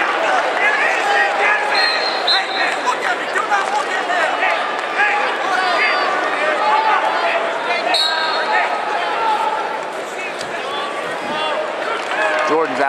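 Large arena crowd at a wrestling match, many voices calling and talking over one another at a steady, loud level. Two short high-pitched tones cut through, about two seconds in and about eight seconds in.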